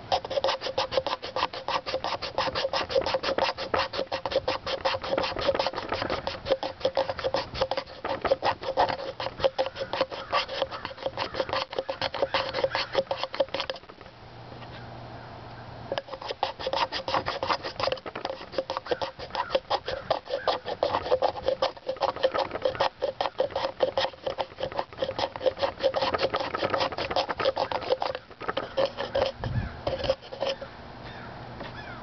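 A Breeden B&B survival knife scraping a bamboo tube in quick, rhythmic strokes, shaving off fine bamboo tinder. The strokes run in a fast, even series, stop for about two seconds midway, then resume, with another short break near the end.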